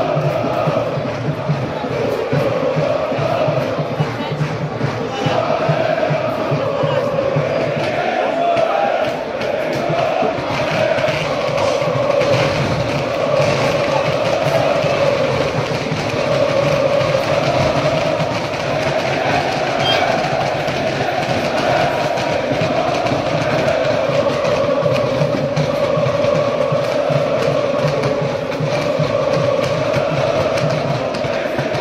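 A large crowd of football supporters singing a chant in unison, loud and sustained.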